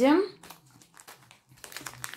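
Clear plastic packaging bag crinkling as it is handled and opened, a string of small rustles and crackles that gets busier in the second half.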